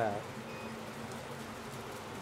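Rack of lamb sizzling steadily as it sears in a smoking-hot pan with a thin layer of clarified butter, over a steady low hum.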